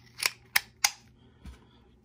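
Three sharp clicks about a third of a second apart, then a soft low bump, as a double-ended thread tap bit is pulled out of the shaft of an IDEAL 7-in-1 Twist-A-Nut screwdriver to be flipped around.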